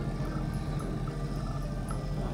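Small passenger ferry's engine idling at the dock: a steady low hum with a faint regular ticking about four times a second.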